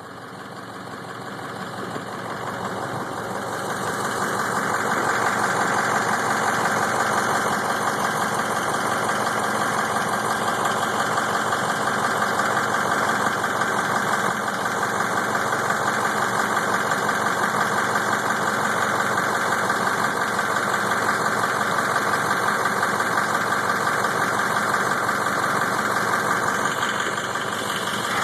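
An engine running steadily with a fast, even pulse. It swells up over the first few seconds, holds, then eases off near the end.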